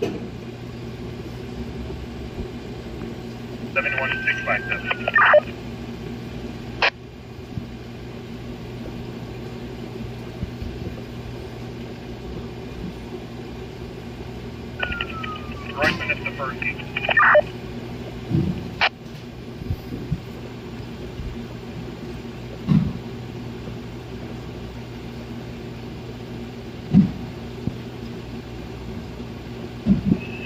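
A BTECH handheld radio's speaker receiving police radio traffic over a steady background hiss and hum. Two brief garbled transmissions come through, about 4 and 15 seconds in, each ending with a sharp squelch click. A few dull thumps come later on.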